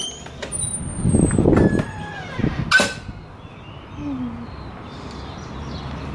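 A push-bar door being opened: handling and rustling noise, then one sharp clack about three seconds in.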